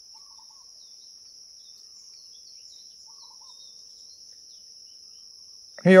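Insects keeping up a steady high-pitched drone, with a few faint bird chirps about half a second in and again about three seconds in.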